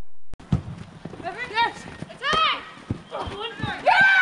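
Footballers shouting on the pitch during a free kick, with a few sharp thuds of boots and ball. There are two rising-and-falling calls in the middle, and louder overlapping shouting breaks out near the end as the ball comes into the box.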